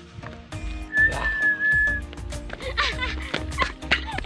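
A high whistled note held steady for about a second, with a few short gliding notes near the end, over background music with a steady beat.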